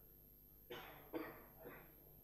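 Near silence broken by a faint cough, three short bursts in the middle.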